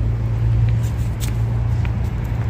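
Steady low hum with rumble beneath it, and a few faint footstep scuffs on the path.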